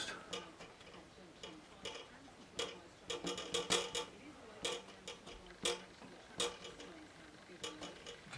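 The edge of a card scraped in short strokes over wet watercolour paint on paper, etching rock and strata texture into the wash: a run of brief dry scratches, irregular and a few per second.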